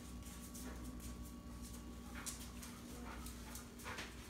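A dog sniffing in short, faint snuffs, several a second, while searching for a hidden scent on a nose-work search.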